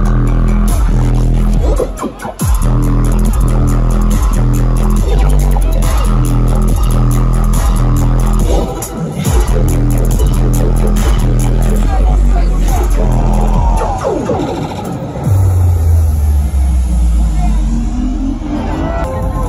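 Loud live dubstep-style electronic bass music from a festival stage sound system, with heavy sub-bass in a steady rhythm. It breaks off briefly about two and nine seconds in, sweeps through a pitch glide near fourteen seconds, then settles into a deep bass drone.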